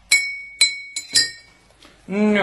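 Four bright, glassy clinks in quick succession, each ringing briefly, the last two close together.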